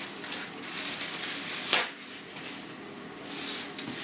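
Paper towel pulled off a kitchen roll and torn off with one sharp snap a little under two seconds in, then the paper rustling as it is wiped across the mouth near the end.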